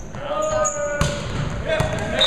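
A volleyball struck in play with a sharp smack about a second in, then another hit near the end.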